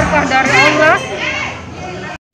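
A woman's voice speaking for about a second over quiet background music; after that the voice stops and the music goes on alone.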